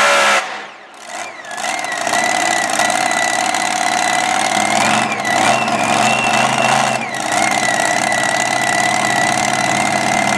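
Mini modified pulling tractor's engine coming off full throttle abruptly as the pull ends, about half a second in. It then idles with a steady high whine, blipped up briefly a couple of times between about five and seven seconds.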